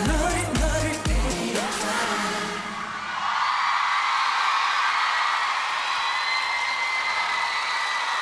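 A K-pop dance track with heavy bass beats and sung vocals hits its last beats and stops about a second and a half in. From about three seconds in, a studio audience cheers steadily, with high-pitched screams.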